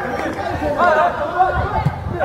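Overlapping chatter and shouts from several players and spectators, no single voice clear.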